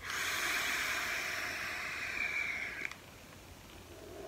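Long drag on a vape: a steady hiss of air and vapour drawn through the device for about three seconds, ending in a small click.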